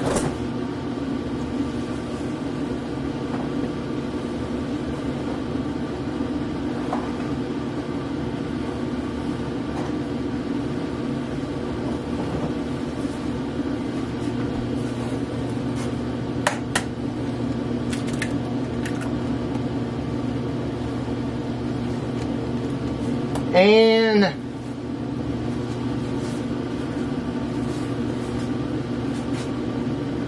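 Steady mechanical hum of a running kitchen appliance or fan. A few light clicks come as an egg is cracked into a bowl, and late on there is one short hum from a man's voice that rises and falls.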